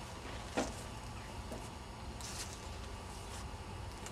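Hive tool and wooden hive parts handled at an open beehive: one sharp knock about half a second in and a brief rustle around two seconds in, over a steady low rumble.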